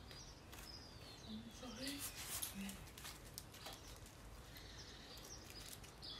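Quiet garden ambience with faint bird calls, including a falling whistle about a second in, and a few short high ticks around the middle.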